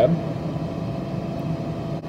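A steady background hum from machinery or ventilation, with faint steady tones and no change through the pause.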